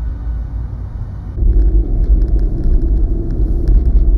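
Steady low rumble of a car driving on a highway, heard from inside the cabin, stepping up louder about a second and a half in.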